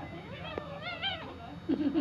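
A cat's wavering meow starting about half a second in, lasting under a second.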